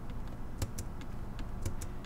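Light clicks of a computer keyboard and mouse, a handful of taps at irregular intervals.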